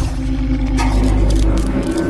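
Loud intro sound effect for a logo animation: a deep, steady drone with a few held tones and crackling glitch noise over it.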